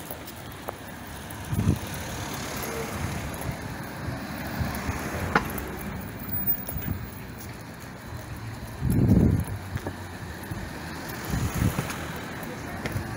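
Road traffic passing along the street, with a few short low thuds on the microphone, the loudest about nine seconds in, and one sharp click about five seconds in.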